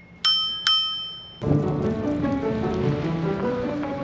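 An electric scooter's handlebar bell dinged twice in quick succession, ringing out briefly. Then, about a second and a half in, background music starts and carries on.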